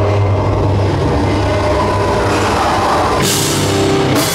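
A heavy band playing live at full volume: distorted guitar through a Peavey 5150 amp, bass and drums in a dense, sustained wall of sound, with a cymbal crash about three seconds in.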